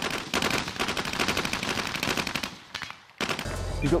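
A helicopter-mounted automatic cannon firing a long, rapid burst. The shots run together and fade out about two and a half seconds in.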